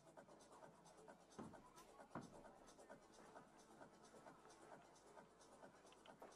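Near silence: faint room tone with light scratchy rustles and two soft knocks about one and a half and two seconds in.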